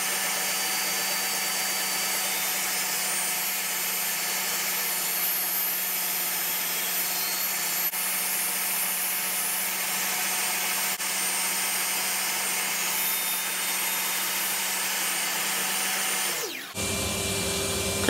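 DeWalt DWE7485 table saw running steadily, its blade teeth set just above the table taking a shallow cove cut as a pine block is slid slowly across it at an angle. The saw's sound stops a little more than a second before the end.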